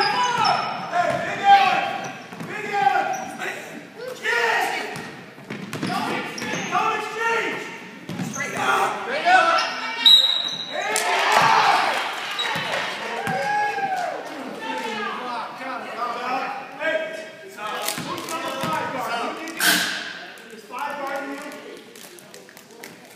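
Basketball bouncing on a hardwood gym floor during a youth game, in a large echoing hall, with players and spectators calling out over it. A short, high referee's whistle sounds about ten seconds in, stopping play for a foul.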